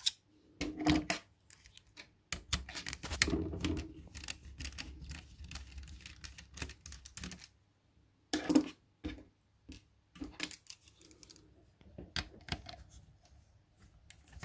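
Irregular clicks and taps of hands, a small screwdriver and loose screws and parts knocking against an opened laptop's plastic chassis and metal heatsink.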